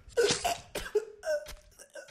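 A person coughing and gasping in a quick run of short, ragged bursts, the loudest one just after the start.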